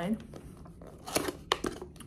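Small cardboard box being handled and opened: a few short, sharp scrapes and clicks of cardboard, about a second in and again near the end.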